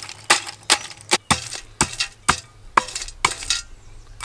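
Cooked, dried oyster shells being broken up in a metal pot by a homemade pounder, a pipe plugged at the bottom: sharp strikes about twice a second, stopping shortly before the end.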